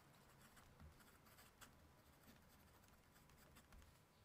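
Faint scratching of a PenBBS 322 fountain pen's #5 nib on paper as a few words are written, with many small ticks from the pen strokes.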